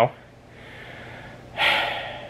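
A man's breath close to the microphone: faint breathing, then one short, sharp exhale about one and a half seconds in.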